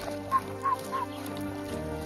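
A bird calling four times in quick succession, short chirps about a third of a second apart, over steady background music.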